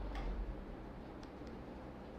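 A few sharp computer keyboard key clicks, one near the start and two close together just over a second in, over a faint low hum.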